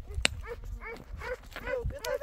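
Young children's voices in a quick run of short, high, arching syllables, babbling and calling out. A single sharp click sounds about a quarter second in.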